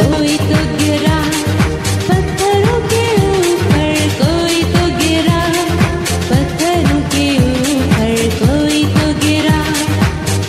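Urdu Sunday-school song: a singing voice over a pop-style backing with a steady drum beat.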